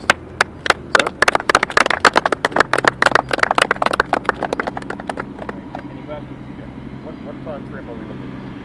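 A small group of people applauding: a few scattered claps that quickly thicken into steady clapping, then thin out and stop about six seconds in.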